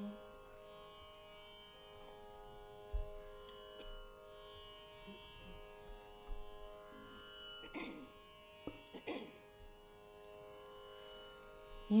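A faint, steady Carnatic drone, held at one pitch throughout, as from an electronic tanpura (shruti box), with a few faint knocks and two brief sounds near 8 and 9 seconds.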